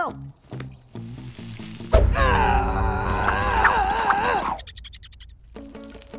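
Cartoon sizzle sound effect of a fingertip burning on a feverish cat's hot fur. It starts suddenly about two seconds in, over a low rumble and a wavering pained cry, and fades after about two and a half seconds, with background music under it.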